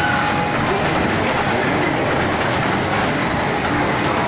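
Small electric kiddie-ride train running along its tubular metal track, with steady wheel-on-rail running noise.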